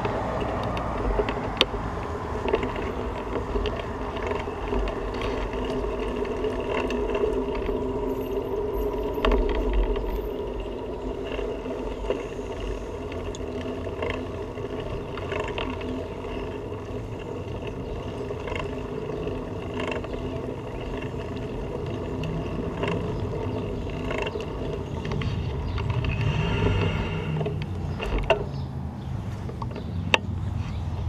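Bicycle rolling over pavement, heard from a camera mounted on the bike: a steady rolling noise with scattered sharp knocks and clicks. A louder hum swells and fades a few seconds before the end.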